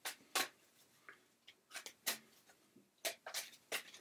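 Tarot cards being handled and laid down: about nine short, sharp clicks and snaps at irregular intervals.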